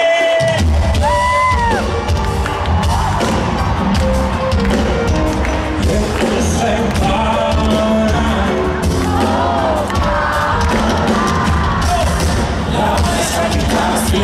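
Live pop band playing in a stadium, the full band with bass and drums coming in about half a second in, with voices and a cheering crowd over the music.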